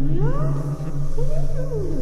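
Eerie electronic sound effect: slow, sliding tones that swoop up and down twice over a steady low drone.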